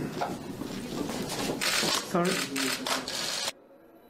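Indistinct voices talking with dense bursts of rapid clicking, which cut off abruptly about three and a half seconds in.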